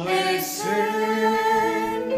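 A small mixed group of men's and women's voices singing a worship song together in harmony, holding long notes.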